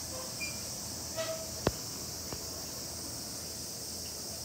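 A steady, high-pitched insect hiss. A sharp click a little before the middle stands out, and a fainter click follows about half a second later.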